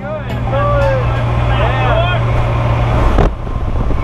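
Skydiving jump plane's engine drone heard inside the cabin, with voices calling out over it during the first two seconds. The drone dips briefly about three seconds in, then carries on.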